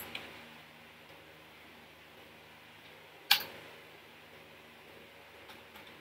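Faint steady hum of room noise, with one sharp click of a computer keyboard key about three seconds in and a couple of much fainter key taps near the end.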